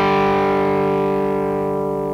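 Semi-hollow electric guitar's open D and G strings (4th and 3rd) struck together as a double-stop and left ringing, fading slowly. It is one note of a riff being played very slowly, step by step.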